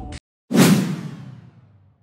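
A whoosh transition sound effect: after the faint room sound cuts off, a sudden loud swish comes about half a second in and fades away over about a second and a half.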